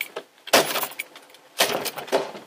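Heavy knocking on a front door by hand, a slow series of loud bangs about a second apart, two of them here, each with a brief rattle of the door.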